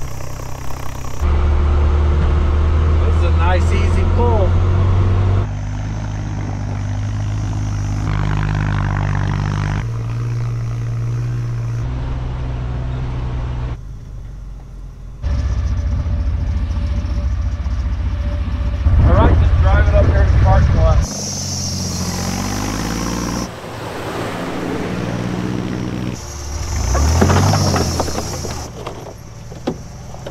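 Engine of a tracked Bombi snow vehicle running as it tows a Jeep through snow on a rope. It is heard in a string of short clips that cut off suddenly, the loudness jumping at each cut.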